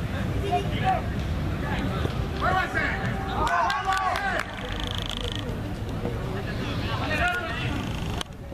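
Outdoor football pitch ambience: scattered voices of players and onlookers calling across the field over a steady low rumble, with a short shrill whistle blast about four and a half seconds in.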